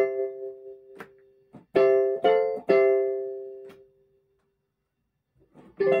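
Weltmeister Claviset 200 electronic keyboard played in chords, each struck sharply and then dying away. Several chords come in the first three seconds, and the last one rings out and fades to silence about four seconds in. Chords start again near the end.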